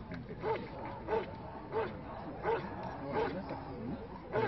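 A dog barking in a steady rhythm: five short barks, about one every two-thirds of a second.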